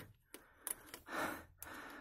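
A person's short, faint breath out about a second in, after a couple of faint clicks from handling the screwdriver and bottle cap.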